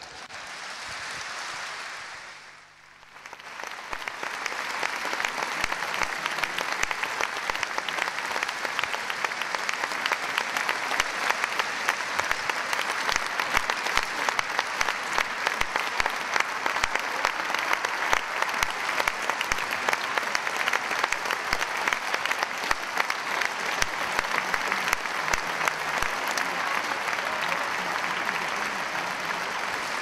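Large audience applauding. The applause is softer at first, dips briefly about three seconds in, then runs on dense and steady.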